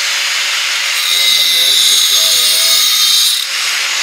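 Makita 4-inch angle grinder with a diamond blade running, grinding along the cut edge of a tile to clean it up: from about a second in the sound turns brighter with a high steady whine while the blade is on the tile, easing off shortly before the end.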